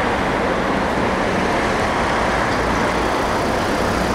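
Road traffic running steadily, with cars driving past close by.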